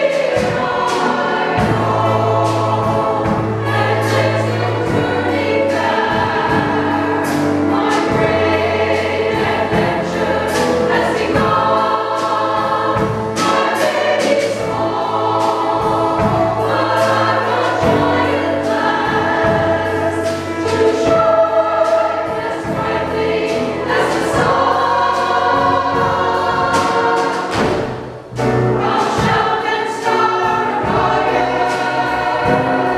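Choir singing with accompaniment. The sound breaks off briefly near the end, then the singing resumes.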